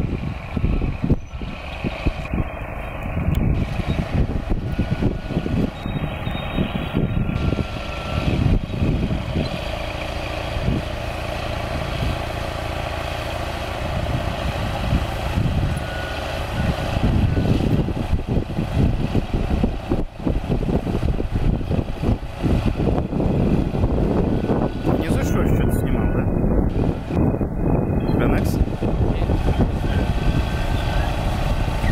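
Chetra T-20 crawler bulldozer's diesel engine working under load as it pushes soil with its blade, with steady knocking and clatter from its tracks.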